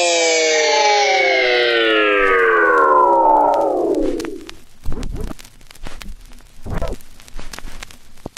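Electronic track ending on a synthesizer chord that slides steadily down in pitch and dies away over about four seconds, like a slowed-down wind-down. After that, scattered crackles and a few short low thuds.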